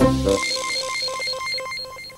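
Cartoon sound effect: a fast electronic trill of short, repeated high beeps over a hiss, like a ringtone, marking a quick change of clothes.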